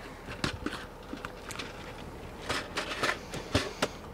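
Scattered light clicks and knocks, with some rustling, as items are handled and moved about on the shelves, more of them in the second half.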